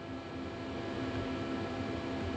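Steady background hum and fan-like noise with several faint steady tones, and no distinct events.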